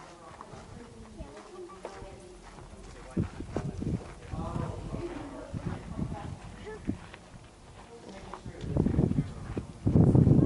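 Faint voices of people talking, with irregular knocks and thumps from about three seconds in and a loud low rumble that builds near the end.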